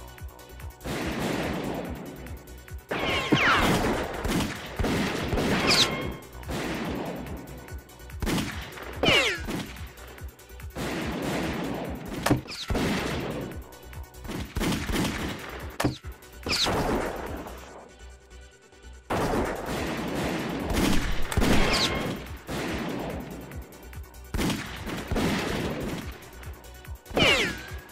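A film gunfight: pistol shots fired in repeated volleys from both sides, with several high whines falling in pitch among them and a short lull about two-thirds of the way in.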